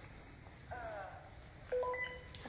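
Two faint, short tonal sounds: a brief gliding chirp about a second in, then a steady beep near the end.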